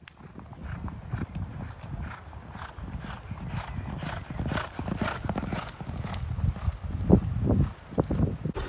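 Hoofbeats of racehorses cantering on a dirt gallop: an uneven run of dull thuds, with a few louder ones near the end.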